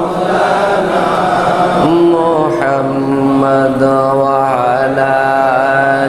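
A man's solo voice chanting a devotional recitation into a microphone, in a slow melody of long held, slightly wavering notes.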